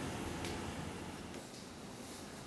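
Quiet room tone: a faint, steady hiss, fading slightly, with a single light click about half a second in.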